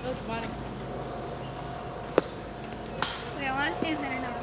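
A single sharp crack about two seconds in: a softball bat striking the ball on a swing. A weaker knock follows about a second later.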